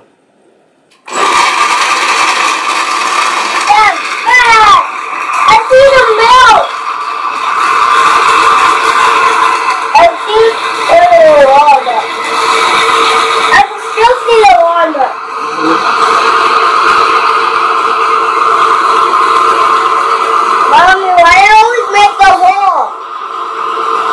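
Countertop blender with a glass jar switching on about a second in and running steadily on its low setting, grinding walnuts in water.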